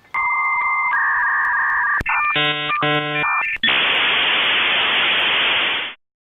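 Dial-up modem handshake. A steady answer tone with short breaks steps to a different tone about a second in, is followed by two stretches of harsh buzzing and chirps near the middle, and then gives way to a steady hiss of data that cuts off suddenly at the end.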